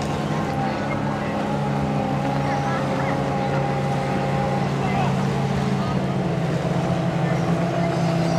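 Outboard motors of 850cc-class race boats running flat out on the water, a steady engine note whose pitch holds almost level, with a slight shift about six seconds in.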